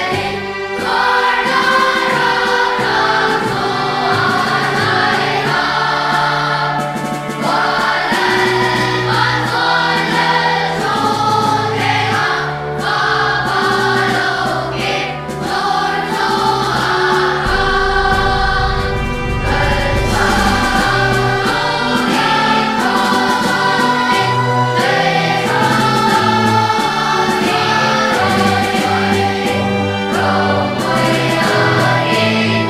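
Children's choir singing a hymn in Mizo, held notes changing steadily over a low bass line.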